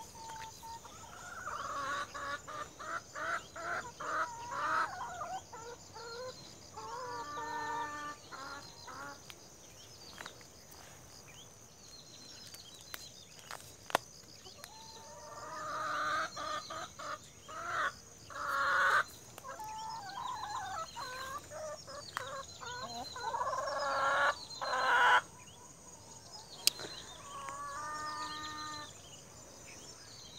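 Domestic chickens clucking in repeated short runs, with a rooster crowing twice, about seven seconds in and near the end.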